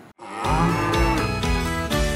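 A cow mooing, beginning about a quarter second in after a brief silence, over the start of the title music.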